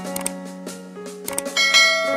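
Background music with subscribe-animation sound effects: short mouse clicks near the start and again about a second and a half in, then a bright bell-like notification chime near the end.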